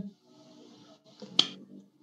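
A pause in speech: faint breathy hiss, then a single sharp click about one and a half seconds in.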